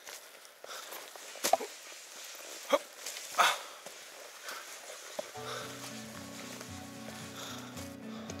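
Footsteps of a hiker climbing a leafy dirt forest trail, with three louder steps in the first half. Background music comes in a little past the halfway point.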